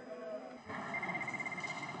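Faint voices and room noise in the parliament chamber between speeches, with a thin, faint high steady tone lasting about a second near the end.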